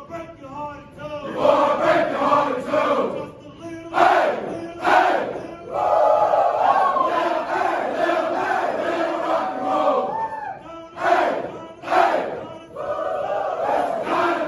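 A large group of soldiers' voices chanting and shouting in unison, with short, louder shouts in two pairs, around a third of the way in and again near the end.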